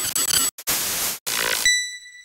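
Intro logo sound effect: three or four bursts of static-like noise broken by short gaps, then, near the end, a high ping that rings on and slowly fades.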